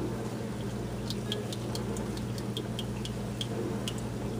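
Steady low electrical hum in a quiet kitchen, with a scatter of faint light ticks from about a second in.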